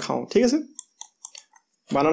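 A voice in a couple of short syllables, then a few small, sharp clicks close to the microphone and a brief pause before speech resumes.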